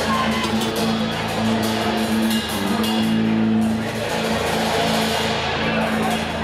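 Live band music at the start of a song: sustained low chords with a steady drum beat ticking over them.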